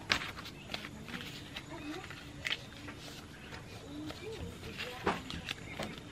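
Paper peso banknotes and paper slips being handled and counted on a table: a few scattered crisp rustles and snaps, with faint voices in the background.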